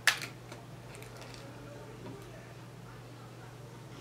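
Quiet handling of a needle, thread and glass seed beads during bead weaving: one short sharp scrape just after the start, then a few faint ticks, over a steady low hum.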